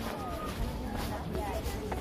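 Footsteps of trainers on an asphalt path at an easy walking pace, about two steps a second, with short bird chirps over a low background rumble.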